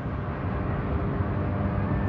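Steady low rumble of a car's road and engine noise, heard inside the cabin, with a faint steady hum.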